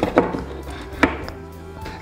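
HDPE plastic boards knocking against a plywood assembly jig as they are set in place: two sharp knocks at the start and one more about a second in, over quiet background music.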